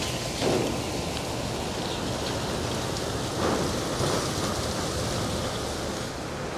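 Wind rushing across the microphone outdoors, a steady hiss that swells slightly a couple of times.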